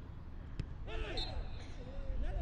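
A single ball kick a little over half a second in, then players shouting calls to each other on the pitch from about a second in, over a steady low stadium rumble.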